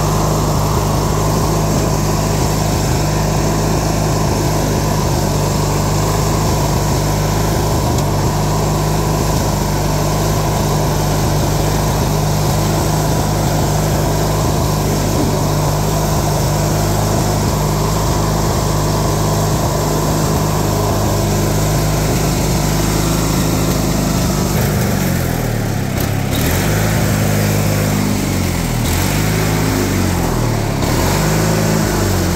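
LT1650 riding lawn tractor's 18-horsepower twin-cylinder engine running steadily as the tractor drives. Near the end the engine speed dips and rises a few times.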